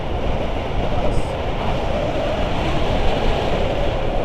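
Steady rush of wind buffeting an action camera's microphone as a tandem paraglider flies through the air, an even noise heaviest in the low end.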